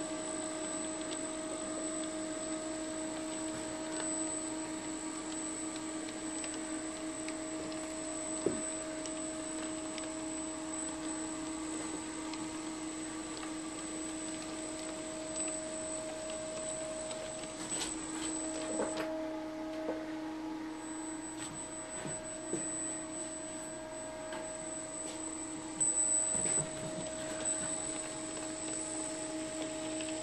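Electric motors and gearing of two Aristo-Craft E8/E9 G-scale model diesel locomotives humming steadily with a held tone as they run along the track, with a few light clicks from the wheels and couplers.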